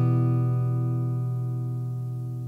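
An acoustic guitar's final strummed chord ringing out and slowly fading.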